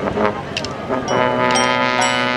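High school marching band playing: a few sharp percussion strikes with ringing mallet notes, then from about a second in the brass section holds a loud sustained chord.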